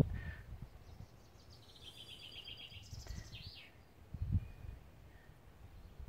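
A small songbird singing one quick trill of repeated high notes that ends in a short flourish, over a faint outdoor background. A soft low bump follows about four seconds in.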